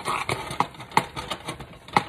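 Metal spoon stirring thick, hot peanut brittle in a metal pot, scraping the bottom and knocking against the sides in an irregular run of clicks, about three or four a second. The candy has just had its baking soda stirred in.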